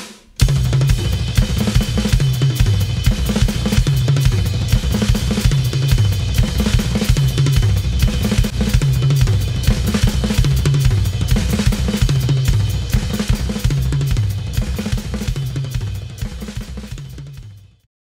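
A drum kit played fast, with dense stick strokes moving around the toms in a repeating pattern over kick drum and cymbals. It starts about half a second in and fades out over the last two seconds.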